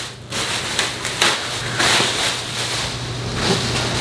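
Clear plastic wrapping crinkling and rustling steadily as it is pulled off a cylindrical air filter.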